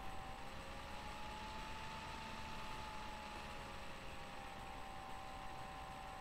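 Low, steady background hiss and hum, with a faint thin tone that drifts slightly up in pitch and settles back down.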